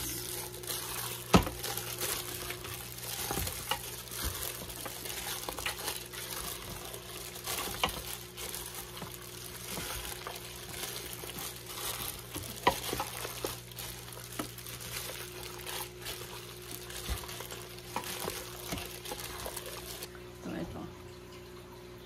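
A hand in a plastic glove mixing raw pork ribs into a wet marinade in a stainless steel pot: continuous squelching and crinkling with scattered clicks and knocks, the sharpest about a second and a half in, over a steady low hum. The mixing stops shortly before the end.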